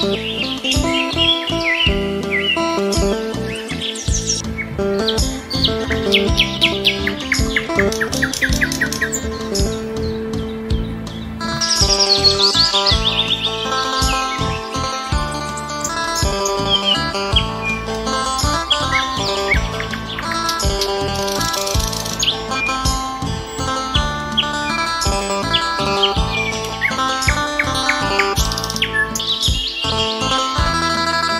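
Instrumental music with a steady beat, with songbird song mixed over it: chirps, trills and fast runs of repeated notes throughout.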